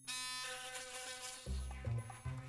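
Electric toothbrush buzzing against teeth, starting suddenly, with low thumps in the second half.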